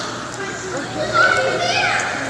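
Children talking and calling out as they play, with a high, sliding shout about a second and a half in.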